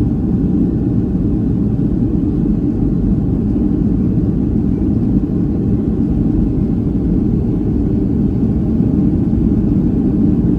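Steady low rumble in the cabin of a Boeing 757-300 taxiing, its engines running at taxi power.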